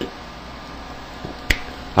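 A single sharp click about a second and a half in, over low steady room noise.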